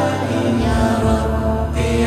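Music: an Arabic devotional song with chanted, layered vocals over a steady low sustained drone.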